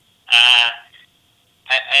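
Speech only: a man on a telephone line hesitates with a drawn-out "uh", pauses, then starts "as... I".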